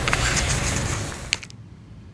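Steady outdoor background hiss with a single sharp click near the middle, then the sound drops suddenly to a much quieter background.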